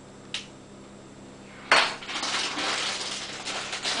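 A spoon knocking and scraping in a glass mixing bowl as egg replacer is added: a light click about a third of a second in, then a sharp knock a little before halfway, followed by continuous clattering and scraping.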